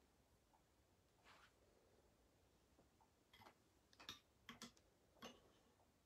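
Near silence with room tone, broken by a few faint, short clicks, most of them in the second half.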